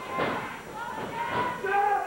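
A couple of dull thuds from wrestlers' feet and bodies on the canvas ring mat as they grapple, with voices coming in near the end.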